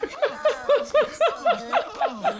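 Cartoon characters laughing in a fast run of short, high-pitched "ha" bursts, about five or six a second.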